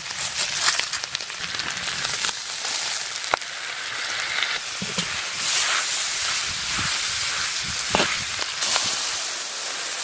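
Sliced pork belly sizzling hard in a hot iron wok as it is stir-fried, the hiss swelling and easing in waves, with a few sharp clicks along the way.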